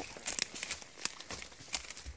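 Dry twigs and dead branches crackling and snapping under a horse's hooves as it steps through brushwood: an irregular string of sharp cracks, about seven in two seconds.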